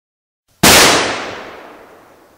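A single gunshot: one sharp, very loud bang about half a second in that rings out and fades away over about two seconds.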